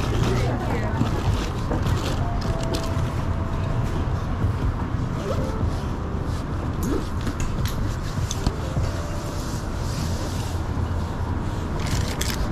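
Steady low rumble of wind on the microphone, with rustling and scattered clicks from the messenger bag and its straps being moved against the clipped-on camera.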